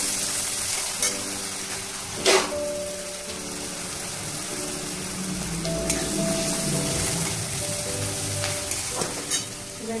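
Sliced onions frying in hot oil in a metal wok, a steady sizzle, while a metal spatula stirs them round the pan. One sharp clink of the spatula against the wok a little over two seconds in, with a few lighter clicks later.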